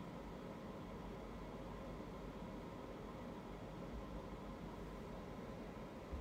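Quiet, steady hiss of room tone with a faint low rumble and no distinct events.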